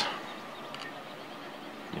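Room tone: a steady faint hiss with no distinct sound.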